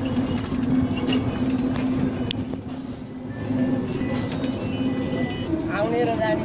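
Inside a moving passenger vehicle: engine and road noise with a steady hum and scattered rattles. The hum steps up a little near the end.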